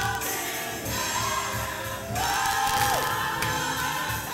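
Gospel choir singing with instrumental accompaniment and a steady beat underneath, with a long held note that slides down about three seconds in.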